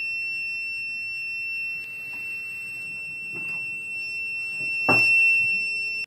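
Sewerin SNOOPER mini gas leak detector's buzzer giving a steady, high-pitched alarm tone while its sensor takes in methane test gas. A click comes about five seconds in, and the tone cuts off suddenly at the end.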